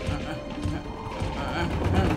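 Cartoon footsteps clattering on the planks of a wobbly wooden rope bridge, over background music.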